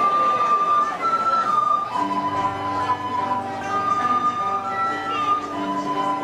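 Children's ensemble playing a Nicaraguan son segoviano: a melody of long held high notes, joined by lower accompaniment about two seconds in, over the tail of applause in the first second.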